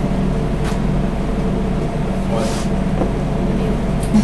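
A steady low mechanical hum of machinery running in the room, with two faint, brief rustles, one near the start and one past the middle.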